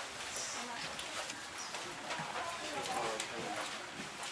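Footsteps of several people walking along an airport jet bridge, with other passengers talking.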